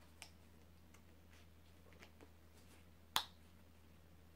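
Small clicks from handling an infant car seat's harness and clips: a few faint ones, then a single sharp click about three seconds in, over a steady low hum.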